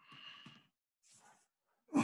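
Faint sounds of a person's breath and voice close to a microphone: a sigh, a short breathy noise, then a louder brief sound near the end, with silence between them.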